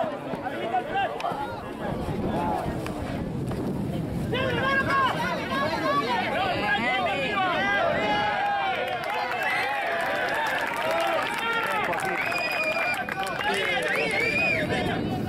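Many voices shouting and calling over one another at a rugby match, players and sideline spectators together, growing fuller and louder about four seconds in.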